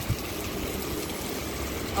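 Steady noise of rain and running water on a wet city street, with a brief thump just after the start.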